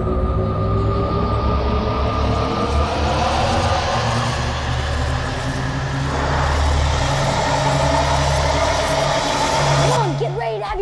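Synthesized effect: a loud, continuous low rumble under a hiss that climbs steadily in pitch, with several held tones slowly gliding upward.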